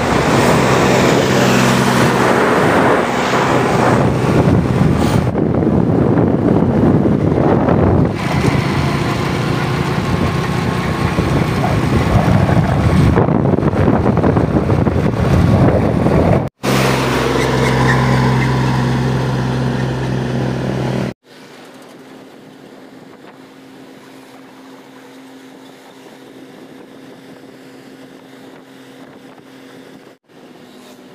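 Tractor diesel engine running while driving along the road, loud and steady, with wind buffeting the microphone. After two abrupt cuts, about two-thirds of the way in the sound drops to a much quieter steady hum.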